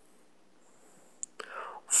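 A pause in a man's slow spoken monologue: about a second of near-silent room tone, then a small mouth click and a soft breathy intake of breath just before he speaks the next word at the very end.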